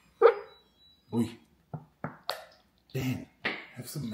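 Plastic squeeze bottle of peri peri aioli sputtering as it is squeezed upside down, a run of short snore-like squirts of air and sauce.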